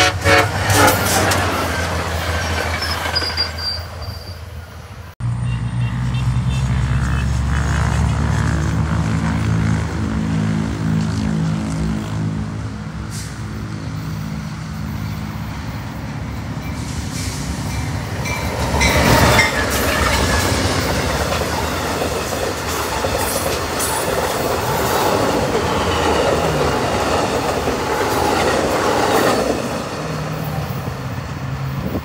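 Passing trains. A train horn sounds in the first second or so over a passing commuter train. After a sudden cut, an approaching Amtrak passenger train's diesel locomotive gives a steady engine drone, grows louder around 19 seconds in, and its passenger cars roll by on the rails toward the end.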